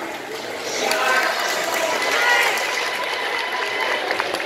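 Speech echoing in a large indoor hall, with audience chatter underneath.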